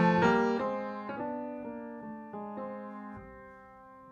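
Piano music: a slow melody of struck notes, each left to ring and fade, opening on a loud chord and growing quieter toward the end.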